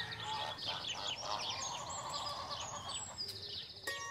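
Birds twittering: many quick, high chirps overlapping throughout.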